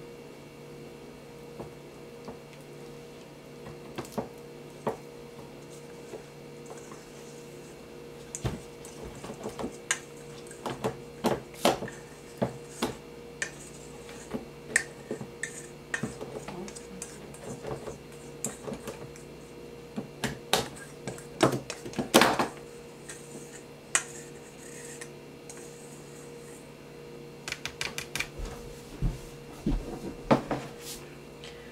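A metal spoon scraping and clinking against a stainless steel mixing bowl as pie filling is scraped out, mixed with the clicks of a hand-cranked can opener, in irregular clicks and scrapes over a steady low hum.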